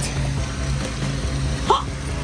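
Soft background music over a steady low hum, with a brief vocal sound near the end.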